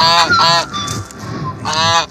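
Domestic goose honking: two quick honks at the start and another near the end.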